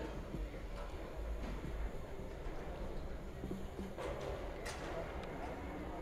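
Faint background ambience: distant, indistinct voices of people talking, over a low steady rumble, with a few light clicks.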